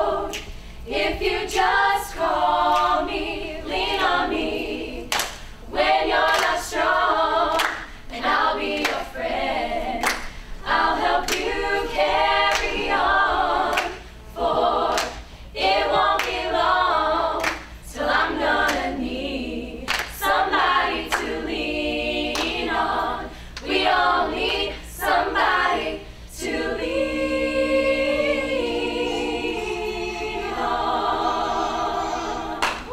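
A group of women's voices singing a cappella, phrase after phrase with short breaks, ending on a long held chord.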